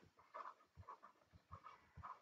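Near silence: room tone with a few faint, short ticks from a stylus writing on a touchscreen.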